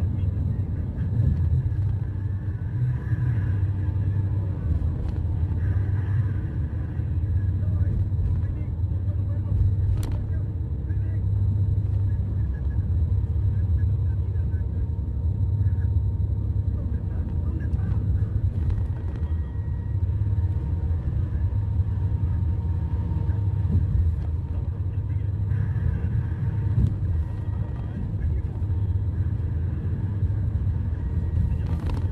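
Steady low road and engine rumble inside a moving vehicle's cabin at highway speed. A single sharp click comes about ten seconds in.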